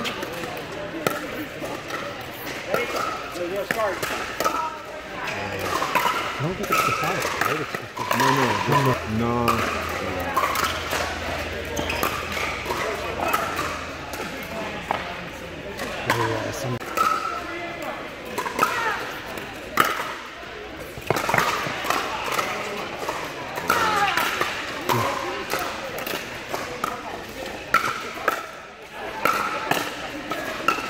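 Pickleball paddles popping the plastic ball in scattered sharp clacks from this and neighbouring courts, over background chatter of players and spectators echoing in a large indoor hall.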